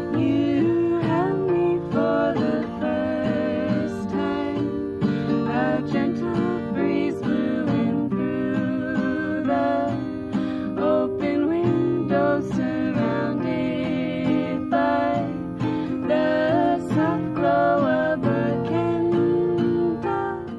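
Acoustic guitar playing with two women singing together, a folk song.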